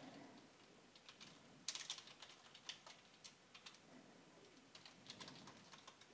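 Faint computer keyboard typing: scattered keystroke clicks in short runs, as a line of code is typed.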